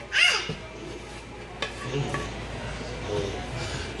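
A metal utensil scraping and clinking against a frying pan as fried zucchini and onions are served, with one sharp click about a second and a half in. A brief voice sounds just at the start.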